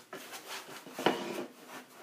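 Foam packing end caps rubbing and rustling as a digital readout display is handled and pulled out of them, with one sharp knock about a second in.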